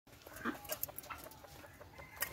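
Caged quail making short, repeated "chook chook" calls, several a second and uneven in timing, the loudest about half a second in.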